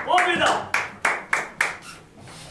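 Hand clapping in a quick, steady rhythm, about seven claps in two seconds, with a man's voice over the first claps in a small tiled changing room.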